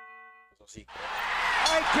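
A ringing chime note from an intro jingle fades out, followed by a brief gap and a click. Then a noisy background swells and a man's excited shout comes in near the end.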